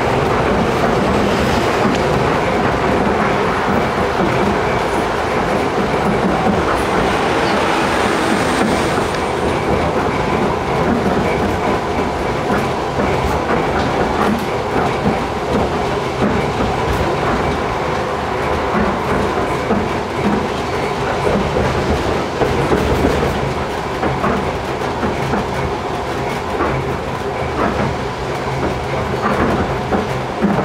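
Tram running along its track, heard from inside the cab: a steady rumble of wheels and motors, with clicks from the wheels that come more often in the second half and a brief thin high squeal about eight seconds in.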